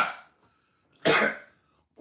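A man clears his throat once, a short rough burst about a second in.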